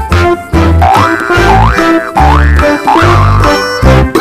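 Comic background music with a bouncy bass line and three quick rising slide sounds in the middle.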